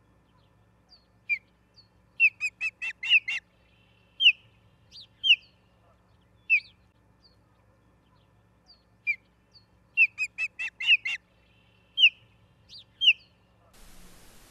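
Ospreys calling: sharp, high whistled chirps, a quick run of about half a dozen followed by a few single chirps spaced about a second apart. The same sequence comes twice, the second starting about eight seconds after the first.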